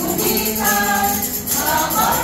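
A small group of adults singing a Christmas carol together in held notes, with a tambourine jingling along.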